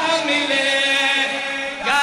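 A man's voice chanting a religious recitation into a microphone, holding one long, slightly wavering note that gives way to a new phrase near the end.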